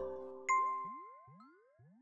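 The outro music's last held notes fade out, then a single bright chime strikes about half a second in and rings away over a second or so, with faint repeated upward sweeps behind it.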